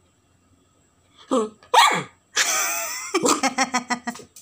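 A small dog vocalising in reply to being asked if it is hungry: a short yip about a second in, then a yelp that slides down in pitch, then a longer strained whining howl that breaks into a quick run of short yips near the end.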